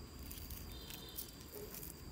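Faint handling of stacked plastic orchid pots: a few light clicks and rustles over low background noise.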